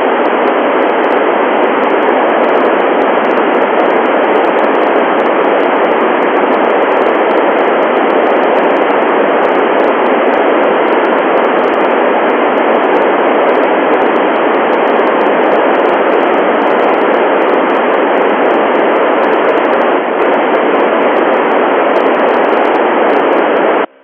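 Steady loud FM receiver static hiss from the Icom IC-9700's speaker, heard on the satellite downlink while no station is transmitting through the transponder. It cuts off abruptly at the end.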